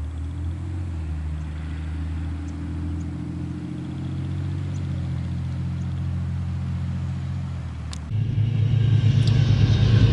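Diesel passenger train running on the line, a steady low drone from its locomotive engine as it moves away. About eight seconds in, the sound cuts abruptly to a second passenger train passing close at speed: a louder engine drone with rumble and rail noise.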